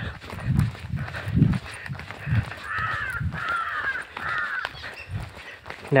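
A crow cawing three times in the middle, over the low thuds of footsteps on a paved road.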